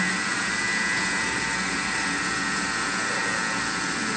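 A Thermomix motor running steadily, whipping cream with its butterfly whisk attachment, giving an even whir.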